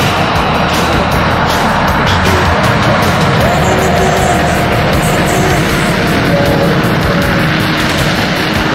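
F-22 Raptor fighter jet engines running at high power on a takeoff roll, a loud steady jet noise with a few faint rising and falling whines, under rock music.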